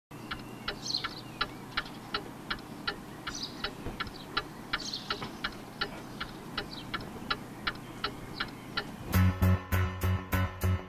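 A clock ticking evenly, about three ticks a second, with a few short high chirps like birdsong in the background. Music with a strong beat comes in near the end.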